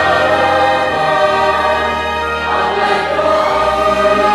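A large congregation of young men and women singing a hymn together, many voices at a steady, full level.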